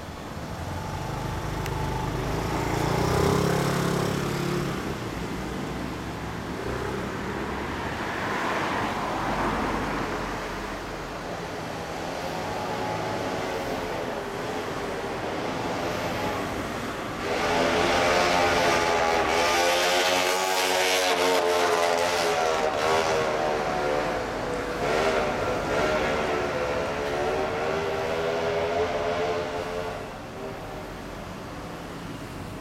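1970 Kawasaki 650-W1SA's parallel-twin engine running, with its pitch rising and falling repeatedly as it is revved. It gets louder about halfway through.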